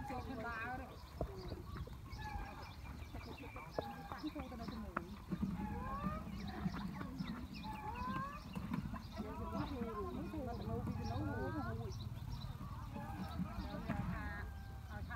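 Several people's voices calling and chattering at a distance, overlapping, with no clear words, over a steady low rumble.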